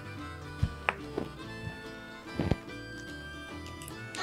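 Soft background music with a few sharp clicks and one heavier knock from crimping pliers closing a spade terminal onto a wire lead.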